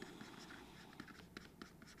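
Faint scratching and light tapping of a stylus writing on a tablet, a few short irregular strokes.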